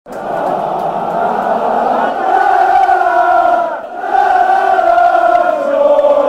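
Large football stadium crowd singing a chant together, one loud sustained line of many voices that breaks off briefly about four seconds in, then carries on.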